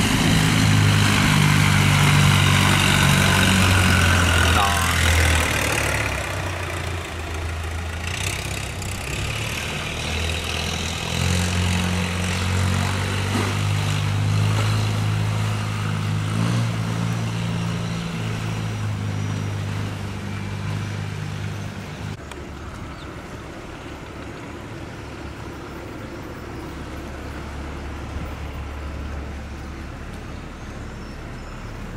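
Long-tail boat (vỏ lãi) engine running fast, with the hiss of its spray, fading about six seconds in. Then a steel barge's engine drone runs steadily and drops to a lower rumble about 22 seconds in.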